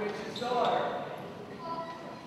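Children's voices speaking lines on a stage, with the echo of a large hall, mixed with a few dull thuds on the wooden stage floor.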